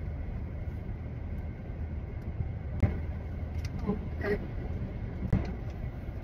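Steady low rumble inside a car cabin, with a few short light clicks about three and five seconds in.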